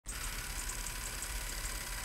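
Film projector running: a steady mechanical whir and hiss with faint ticking about five times a second.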